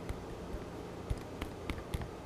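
Ranch dressing squeezed from a plastic squeeze bottle onto a plate: a few faint clicks and small squelches over quiet room hum.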